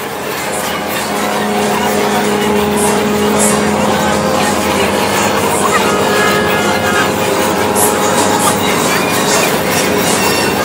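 Dense city street noise with traffic running under it, layered with steady droning tones. The sound swells up over the first second or so and then holds level.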